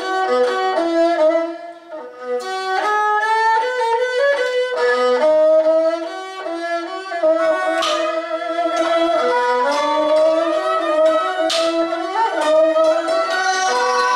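Khmer two-string bowed fiddle (tro) playing a melody of held notes that slide from pitch to pitch, with a khim hammered dulcimer struck now and then beneath it.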